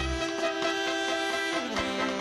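Big band with trumpets and saxophones playing a Latin tune over drums, holding a sustained chord that slides lower near the end.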